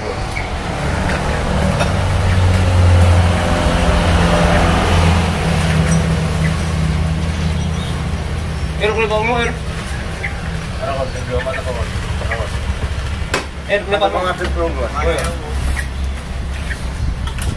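Motorcycle engine running as it comes up close, loudest a few seconds in, then fading down. Short bursts of voices follow in the second half.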